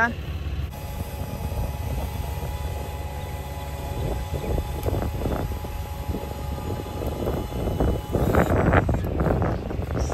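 An RV's powered leveling jacks retracting: a steady motor drone with a faint whine. A louder rough scraping stretch comes near the end as the jack feet lift off the gravel.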